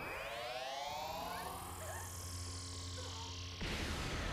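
Anime fight sound effects with score: several rising, swooping glides open over a steady low sustained tone, then a sudden louder rushing noise breaks in near the end.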